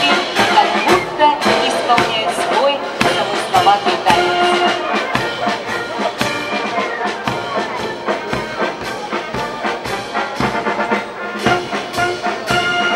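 Brass band music: trumpets and trombones over a steady drum beat of about two beats a second.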